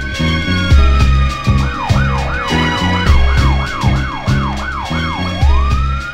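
Hip-hop beat with heavy bass and drums, overlaid with a police-style siren. A slow wail falls away in the first second and a half, then about nine fast yelp sweeps follow, and the slow wail rises again near the end.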